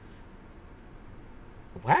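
A quiet pause with faint, steady background noise inside a car cabin, ending near the end in a man's drawn-out "Wow."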